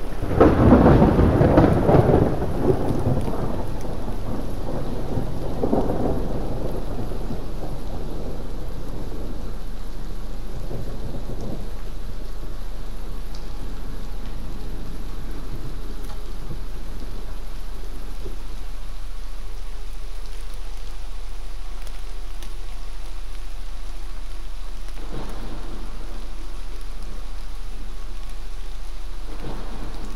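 Thunderstorm: steady rain with rolls of thunder, the biggest in the first few seconds and smaller ones about six and eleven seconds in. A steady deep hum runs underneath.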